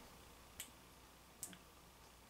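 Near silence: room tone, with two faint short clicks a little under a second apart.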